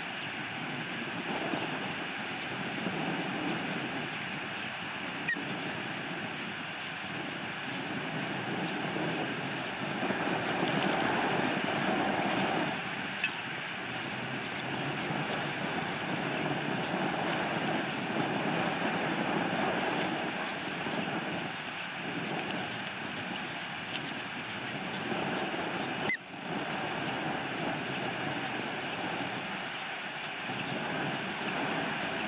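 Steady outdoor rushing noise on the nest-cam microphone, a little louder for a couple of seconds about ten seconds in, with a few sharp clicks.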